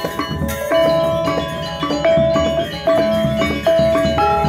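Balinese gamelan gong ensemble playing a tabuh lelambatan: bronze metallophones and gongs struck with mallets, their notes ringing on. Strong sustained notes come about once a second over a busier layer of shorter struck notes.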